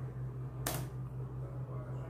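A steady low hum with one brief click-like noise about two-thirds of a second in.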